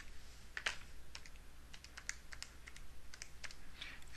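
Buttons of a TI-84 Plus graphing calculator being pressed as a division is keyed in: a run of faint, light, irregularly spaced clicks.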